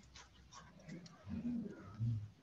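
A dove cooing faintly, with low, rounded coos about a second and a half in and again at the end, heard through a video-call microphone.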